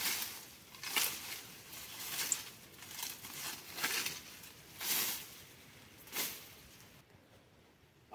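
Long-handled brush hook slashing through dry grass and brush: about seven swishing cuts, roughly one a second, dying away near the end.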